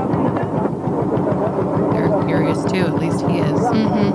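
Several voices talking and calling over a steady low rumble, with higher-pitched cries joining about halfway through.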